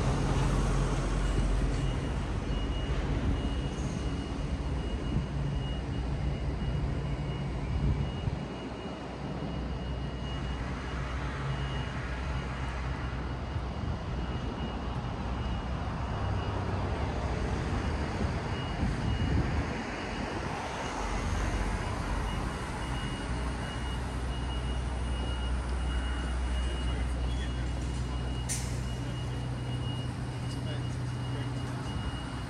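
City street traffic alongside the pavement: a steady low engine rumble of heavy vehicles such as buses and trucks, with passing traffic. It dips briefly about a third of the way in and again past the middle, while a faint thin high tone runs through most of it. There is a sharp click near the end.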